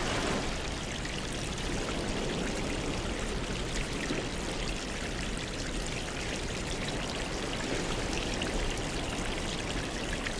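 Aquarium water splashing and trickling steadily, with a fine patter of air bubbles rising and breaking at the surface.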